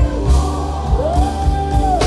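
Live gospel music: a band with a steady drum and bass beat under singers, one voice rising into a long held note about halfway through.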